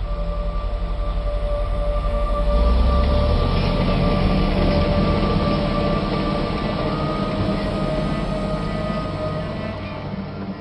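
Heavy construction machinery rumbling under a sustained droning ambient music bed. The rumble swells a few seconds in.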